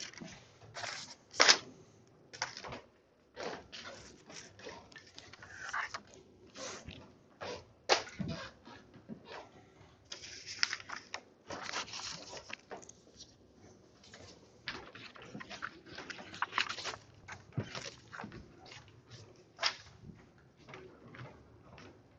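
Classroom sounds while students copy notes: scattered taps, clicks and rustles of pencils, paper and people shifting, with sharper knocks about one and a half seconds and eight seconds in.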